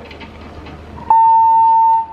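A single loud electronic beep, one steady tone held for about a second, beginning about a second in: the ski jump's start signal.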